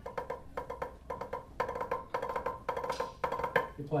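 Drumsticks playing a rudimental figure hand to hand on a drum practice pad, a dry, woody knock on every stroke. The strokes come in quick clusters, with grace-note drags mixed into the figure.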